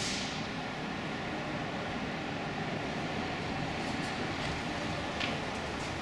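Steady low rumble and hiss of background noise, with a couple of faint taps about four and five seconds in.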